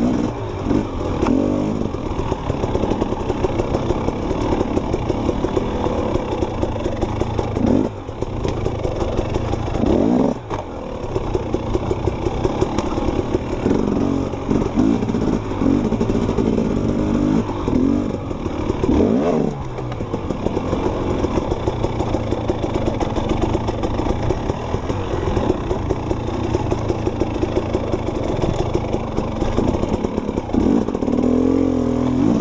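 Enduro dirt bike engine being ridden hard through tight forest singletrack, the revs rising and falling constantly with the throttle. The revs drop briefly about 8 and 10 seconds in as the throttle is shut and opened again.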